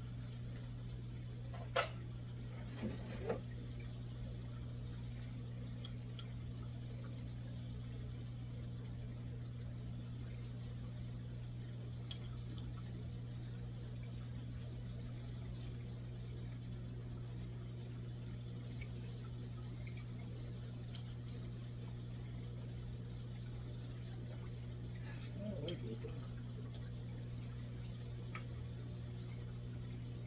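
Saltwater aquarium's pumps and powerheads humming steadily, with water trickling and bubbling at the surface. A few sharp clicks or small splashes stand out, the loudest about two seconds in, and a brief burst of sound comes a few seconds before the end.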